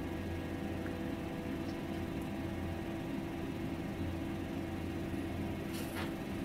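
Steady low hum with a faint hiss, a room and recording background with no voices; a faint tick near the end.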